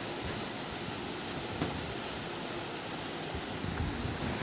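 An electric fan running in the room: a steady rushing noise.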